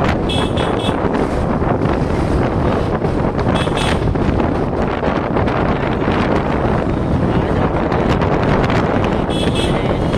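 Wind rushing over the microphone of a moving motorbike, with steady road and traffic noise. Short vehicle horn beeps sound three times: near the start, about four seconds in, and near the end.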